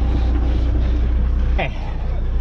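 Heavy diesel truck engine idling with a steady low rumble, which lessens somewhat near the end.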